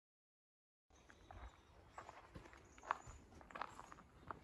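Faint footsteps walking on a dry, leaf-covered forest trail, beginning after about a second of dead silence, with one sharper knock about three seconds in.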